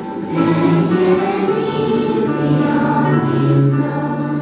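A children's choir singing a Christmas carol together, holding long notes that change pitch about once a second.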